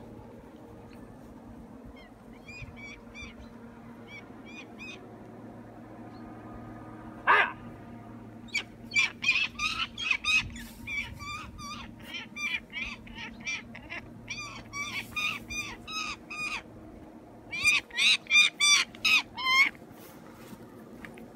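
A bird of prey calling in rapid runs of short, sharp, repeated cries: a faint run early, one loud single call about seven seconds in, then long runs of calls, loudest near the end.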